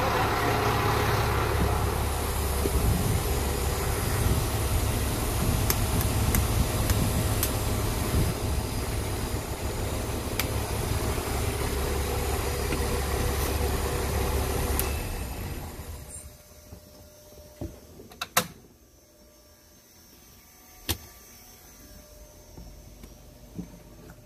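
Fire truck engine running steadily with a deep rumble, then shut down about fifteen seconds in, its sound dying away over a second or so. A few sharp clicks follow in the quiet.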